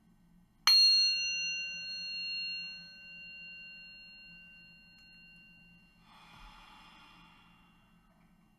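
A meditation bell struck once, just under a second in, its clear ringing tone slowly dying away over several seconds. Near the end comes a soft, slow out-breath.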